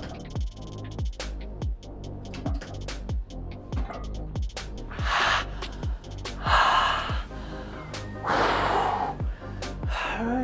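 Background electronic music with a steady beat, about two kick-drum strokes a second. Over it, from about halfway through, a man gives three loud, forceful straining exhales or groans of effort, pushing through the last reps of a heavy leg-extension set.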